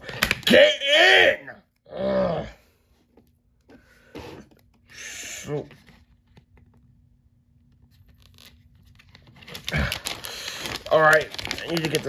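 Stickers being peeled off a paper backing sheet and handled: a short papery tearing about five seconds in, and a longer crinkling rustle through the last couple of seconds. A voice mutters in the first couple of seconds.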